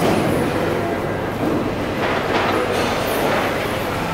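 Steady mechanical rumble with a constant low hum, the background noise of a large market hall.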